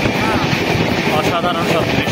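Passenger train running, heard from inside the coach: a steady rumble and rush of wheels and air. Passengers' voices chatter in the background.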